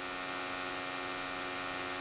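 Steady electrical hum, a stack of even tones that holds unchanged.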